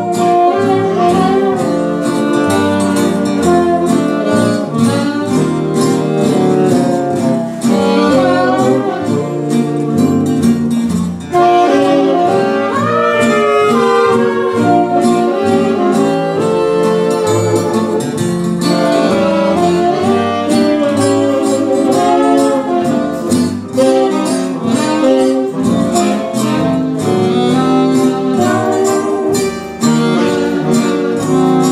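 Traditional jazz band of trumpets, saxophones and clarinets, trombone, string bass, banjo, piano and drums playing a 1920s New York dance-band arrangement, with the saxophones to the fore.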